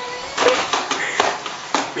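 A few sharp knocks and taps, about four in two seconds, with rustling: handling noise from a baby car seat carrier being swung around.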